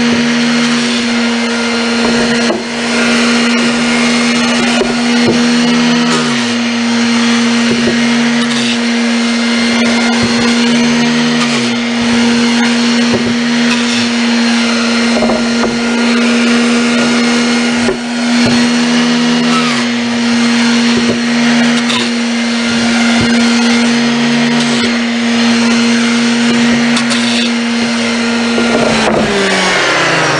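Electric random orbital sander running with a steady hum, roughing up the faces of sample boards with coarse 60 or 80 grit paper to give them texture before primer. The pitch sags and recovers every few seconds as the sander is pressed and moved, and the motor winds down shortly before the end as it is switched off.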